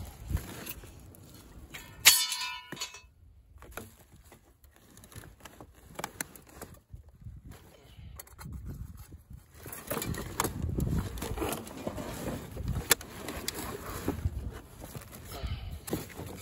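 Old car body parts being handled in a pile: a sharp metal clang with a brief ring about two seconds in, then scattered knocks and handling of plastic sheeting, busier and louder in the second half.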